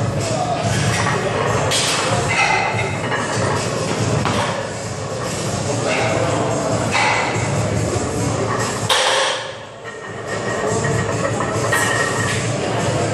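Weight-room background of music and people talking, with a few thuds, and a sharp metallic clank about nine seconds in as a loaded barbell is set back into the squat rack.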